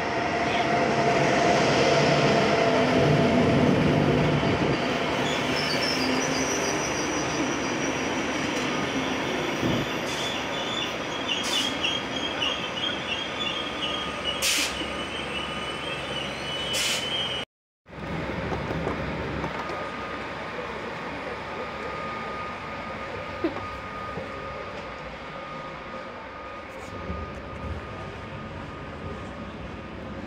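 Deutsche Bahn class 101 electric locomotive running into the platform with its low electric hum, loudest as it passes close a few seconds in, followed by Intercity coaches rolling in with high brake or wheel squeal and a few sharp clanks as the train slows. After a sudden cut the sound becomes a steadier, quieter rumble with a faint thin whine, heard inside a passenger coach.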